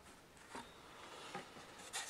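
Faint rubbing of a cardboard box insert being handled, with a couple of small soft bumps.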